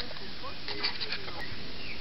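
Background chatter of distant voices over a steady outdoor hiss, with a few faint short chirps.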